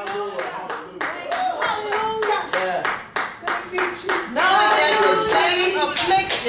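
Church congregation clapping hands in a steady rhythm, about three to four claps a second, with voices calling out over it; a louder voice comes in about four seconds in.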